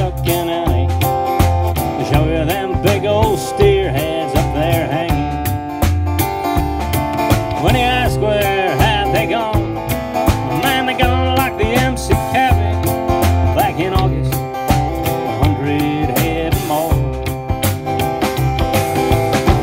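Live country band playing a song: acoustic guitar, upright bass and drums over a steady beat.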